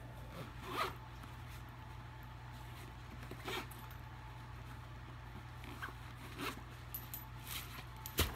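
Zipper on a fabric pouch being worked in a few short, faint pulls, over a steady low hum.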